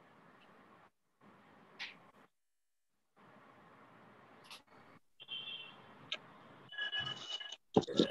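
Faint hiss from an open video-call microphone that cuts in and out, with a couple of short clicks; a faint voice comes in near the end.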